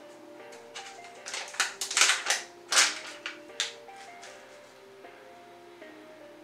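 A sealed foil pouch being torn open and handled, with several sharp crinkles and rips from about one and a half to three and a half seconds in. Soft background music with a slow melody plays throughout.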